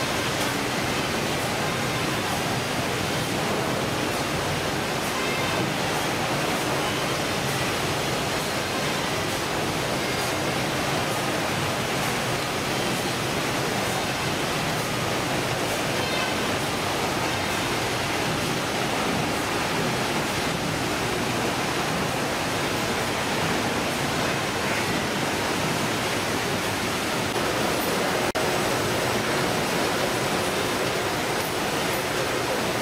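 Steady, even noise of fish-processing machinery and running water on a ship's processing deck, with no distinct knocks or strokes.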